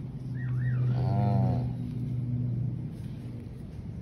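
A short animal call about a second in, rising and then falling in pitch, over a steady low hum, with a brief wavering high chirp just before it.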